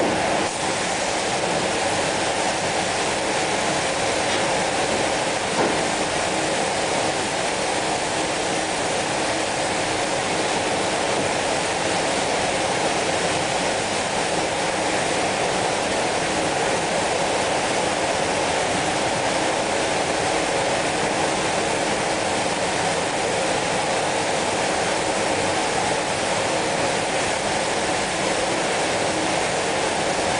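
Steady rushing air noise in a paint spray booth while a compressed-air spray gun sprays chrome coating, with a faint steady hum running under the hiss.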